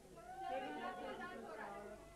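Indistinct talking of several voices, fairly soft, in a gap where the music has stopped.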